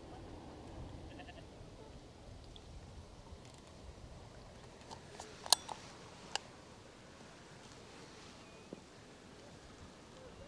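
Light wind noise with a few sharp clicks from a fishing rod and reel a little past halfway, the loudest a single crisp click, as a waggler float rig is cast.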